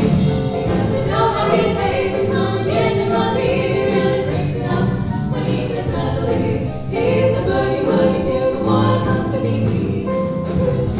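Four women singing a swing-style song together in harmony, live through microphones, backed by a drum kit.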